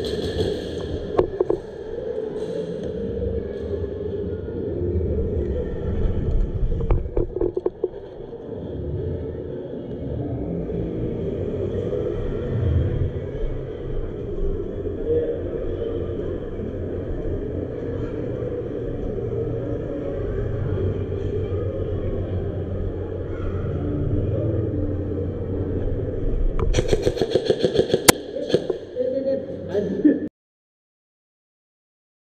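Airsoft game heard on a player's camera: a steady low rumble with faint voices under it, a few sharp clicks about a second in and again around seven seconds, and a dense run of sharp cracks and knocks about three seconds from the end, as the player takes aim.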